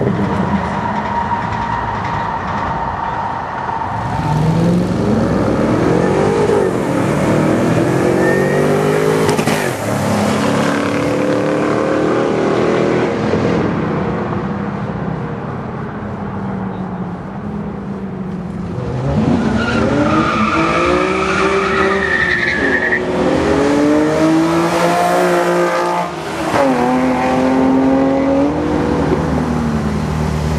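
Street cars drag racing, engines at full throttle as they launch and accelerate hard down the strip. Each engine's pitch climbs, drops back at a gear change and climbs again. One run starts about four seconds in and a second about nineteen seconds in.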